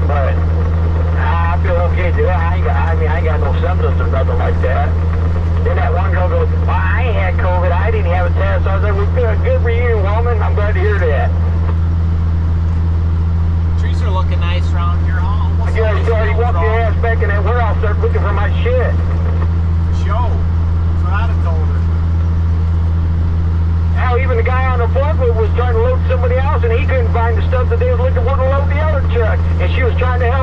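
Diesel engine of a Kenworth cabover semi truck droning steadily at highway cruise, heard from inside the cab, with voices talking over it.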